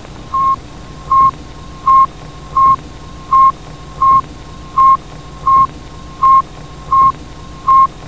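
Electronic beep sound effect: short beeps at one steady pitch, repeating evenly about three every two seconds. A faint tone at the same pitch is held between them, over a low hum and hiss.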